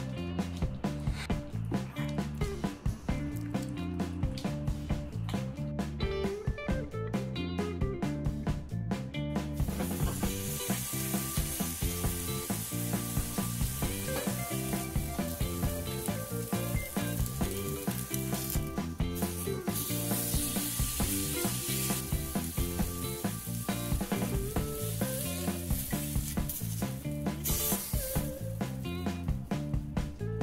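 Background music with a steady beat throughout. About a third of the way in, a thick beef steak starts sizzling on a hot griddle plate over a gas flame, breaking off briefly twice before ending near the close.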